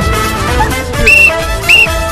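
Referee's whistle blown in two short, shrill blasts, the first about a second in and the second near the end, over background music.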